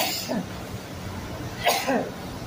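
Two short vocal sounds, one at the start and one about a second and a half later, each falling in pitch, over a faint steady background.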